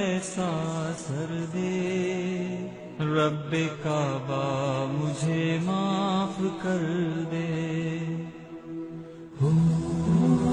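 Wordless vocal opening of an Urdu devotional song: a solo voice holding long, wavering, ornamented notes over a steady held drone. It grows quieter shortly before the end, then a louder phrase comes in.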